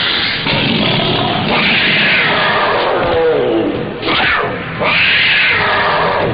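A run of loud animal roars, the film's sound effect for the bear attacking: several long growling calls, each sliding down in pitch.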